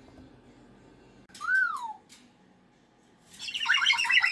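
A cockatoo calling: a short whistle that rises and falls about a second in, then a loud, harsh screech near the end.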